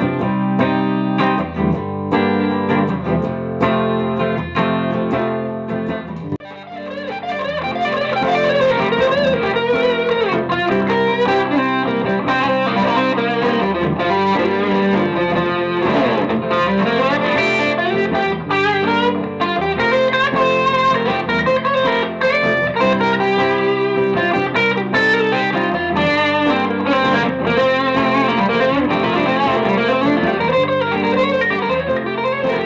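Gibson Les Paul electric guitar played through an amp: chords for about the first six seconds, then, after a brief dip, single-note lines with string bends.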